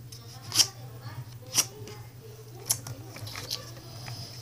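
A sheet of paper being handled and creased by hand for origami, with crisp rustles. Three of them are sharper and louder than the rest, about a second apart.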